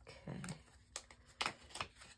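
Hands handling small plastic bags of diamond-painting drills: a few light crinkles and clicks.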